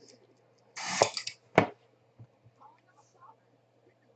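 Plastic wrapper being torn open on a small trading-card box by its tear strip: a short rip about a second in, then one sharp snap.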